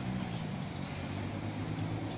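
An engine running steadily with a low hum, with a couple of faint clicks over it.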